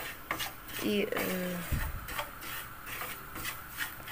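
A spoon stirring and scraping semolina that is toasting in margarine in a non-stick frying pan, in uneven strokes. This is the stage where the semolina is browned to golden before the sugar syrup goes in.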